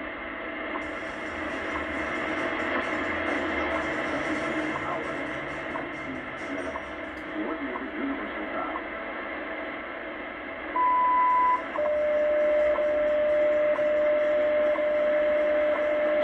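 WWV time signal on 25 MHz, heard through a shortwave receiver in AM over heavy static with faint ticks once a second. About eleven seconds in, a long beep marks the top of the minute, followed by a steady lower tone that continues to the end.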